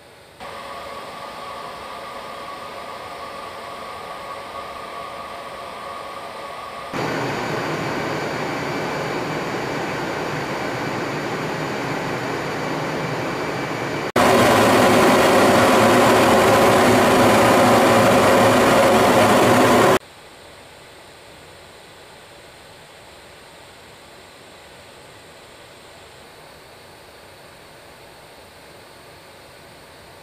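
Steady jet engine and rushing-air noise of aircraft in flight, in spliced sections that jump abruptly in loudness: moderate with a few steady tones for the first seven seconds, louder after that, loudest and hissiest from about 14 to 20 seconds, then dropping suddenly to a faint steady hiss.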